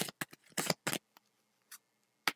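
Tarot cards being shuffled and handled: a quick run of short card snaps and clicks in the first second, then a couple of sparse ones.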